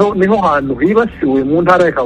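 A man speaking continuously over a telephone line, the voice thin with little treble.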